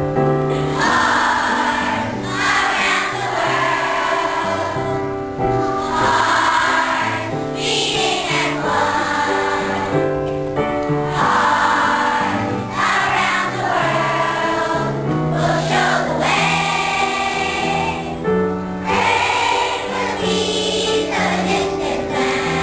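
Large children's choir singing a Christmas song over instrumental accompaniment, in phrases of a few seconds with short breaks between them.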